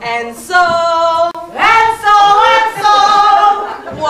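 A woman singing unaccompanied in long held notes: one about half a second in, then a slide up into a longer sustained note held almost to the end.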